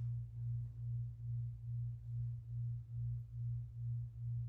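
A low steady hum that swells and fades about three to four times a second, with nothing else standing out.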